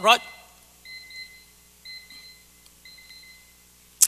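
Electronic beeper sounding a soft, high-pitched pattern of short beeps in pairs, about one pair a second.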